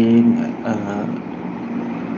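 A person's voice: a held, drawn-out hesitation sound and a short word in the first second, then a steady background noise with no voice.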